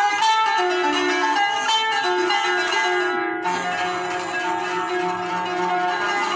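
Kanun, the Turkish plucked zither, played solo in traditional Turkish maqam style. A flowing melody of quickly plucked, ringing notes, with a lower note entering about three and a half seconds in.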